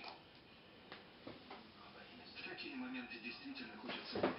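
Faint distant speech, as from a television playing in the room, with a few soft clicks.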